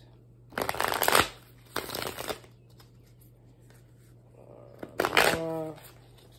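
A tarot deck being shuffled by hand: three short bursts of cards rustling and slapping together, about half a second, two seconds and five seconds in, the first the loudest. A brief voiced sound follows the last shuffle near the end.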